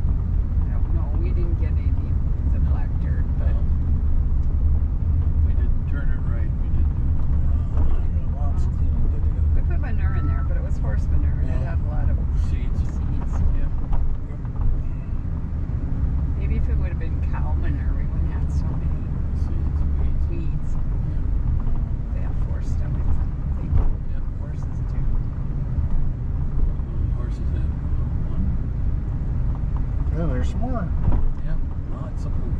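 Steady low rumble of a car's engine and tyres, heard from inside while driving slowly.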